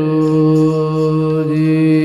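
Sikh devotional chanting (simran), with long held notes over a steady drone.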